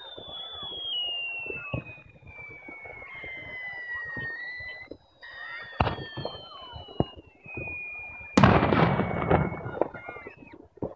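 Fireworks at night: long, slowly falling whistling tones, two sharp bangs about a second apart past the middle, then a loud crackling burst near the end.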